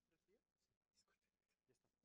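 Near silence, with only very faint, indistinct voices.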